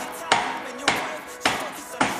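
Hip-hop backing beat: a sharp snare or clap hit a little under twice a second, in a perfectly steady rhythm, over faint sustained tones.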